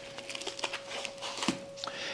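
Light rustling and crinkling of plastic packaging with small soft clicks as raw chicken pieces are lifted out and handled. A faint steady hum runs underneath.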